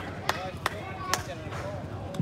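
Hand claps near the microphone, three sharp claps about two a second in the first half, over faint distant voices.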